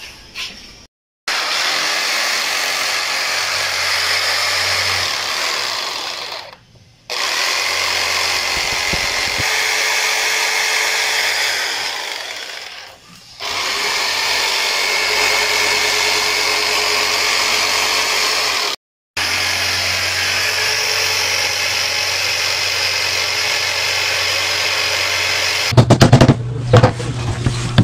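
Electric jigsaw cutting through a wooden plank, running in four long stretches with short breaks between them.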